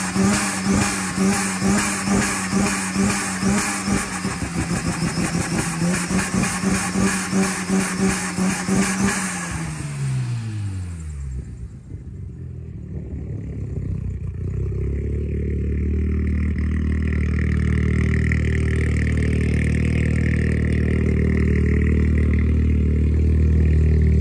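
Twin-turbo 13B rotary engine of a 1993 Mazda RX-7 running just after startup, with a regular lope about twice a second. About nine seconds in, its pitch drops steeply, and it settles into a lower, steady idle that grows louder toward the end.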